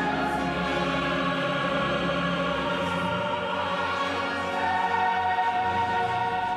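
Choir singing held chords over a low instrumental accompaniment, the harmony changing about three seconds in.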